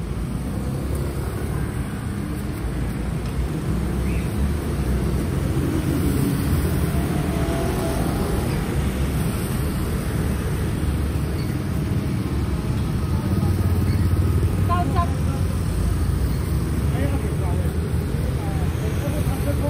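Street traffic rumbling steadily, with people talking in the background.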